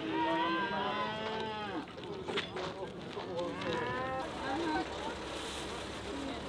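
Cattle mooing: one long moo at the start, then a shorter one about three and a half seconds in.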